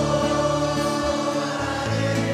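A congregation singing a Spanish worship song with musical accompaniment, holding a long sung note.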